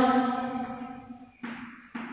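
A woman's voice holding one long drawn-out note that fades away over about a second and a half, with a short sound near the end.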